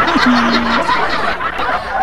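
Laughter from several voices at once, chuckling and snickering, with music underneath.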